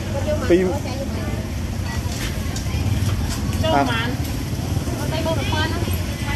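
Street-market ambience: people talking in short phrases over a steady low rumble of traffic engines.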